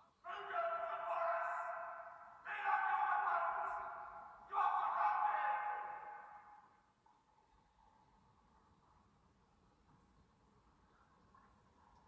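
Three sustained electronic tones from the TV episode's soundtrack follow one after another, each ringing for about two seconds and fading. A faint steady tone lingers after them.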